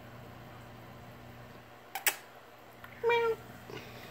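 Domestic cat meowing once, a short pitched call about three seconds in. A sharp click comes a second earlier, over the low steady hum of the aquarium equipment.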